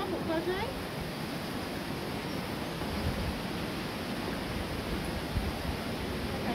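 Steady rushing of a mountain waterfall's falling water, an even hiss with no rhythm, with a voice briefly at the start.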